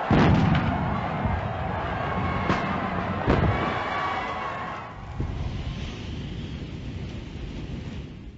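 City street noise: a steady traffic rumble, loudest at the start as a car passes close by, with two sharp knocks a couple of seconds in.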